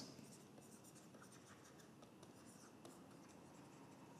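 Near silence with faint, scattered strokes of a pen or stylus writing on a tablet.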